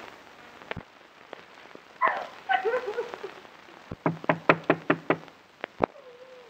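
A woman sobbing: wavering cries about two seconds in, then a run of short, quick sobs around the fourth and fifth seconds. Faint crackle from an old film soundtrack underneath.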